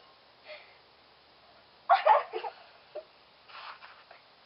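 Stifled, breathy laughter in a few short bursts, the loudest about two seconds in, with a softer breathy burst near the end.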